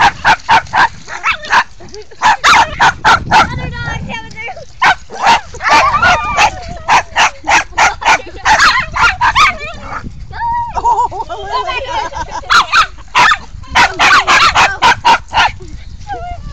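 Dog barking in quick runs of short, sharp barks, several a second, with a lull around the middle.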